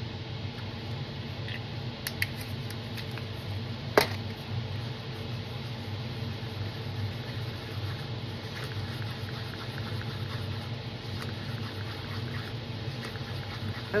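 Wooden craft stick stirring dyed epoxy resin in a paper cup, a soft scraping over a steady low hum, with one sharp click about four seconds in.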